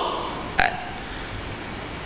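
A short throat sound from a man at a microphone, a sharp onset with a brief tone, about half a second in, during a pause in his talk, over steady background noise.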